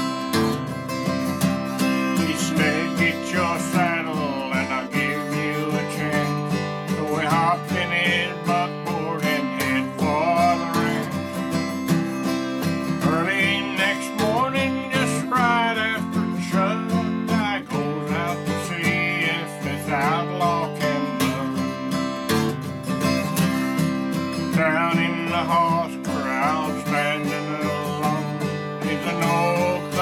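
Steel-string acoustic guitar played solo in a steady country strum, with picked bass notes, during an instrumental break between sung verses.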